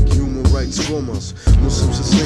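Hip hop track: a beat with deep kick drum hits and bass under a rapped vocal.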